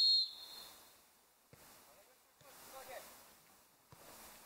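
Referee's whistle, one short high blast, signalling the kickoff. It is followed by a couple of dull thuds of the ball being kicked and a distant shout from the pitch.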